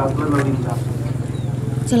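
A man's voice reading a speech over a microphone, with a steady low hum underneath.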